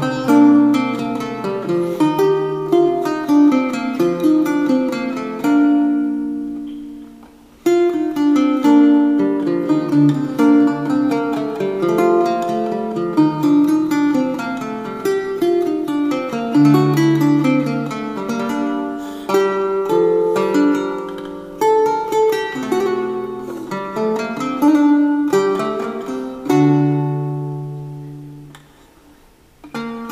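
Baroque guitar played solo: plucked melody notes and chords, each ringing and fading. The playing dies away to a short gap about seven seconds in and again near the end, at the close of phrases, before picking up again.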